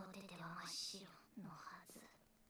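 Faint speech from the anime episode's soundtrack: a character saying a line quietly, low in the mix.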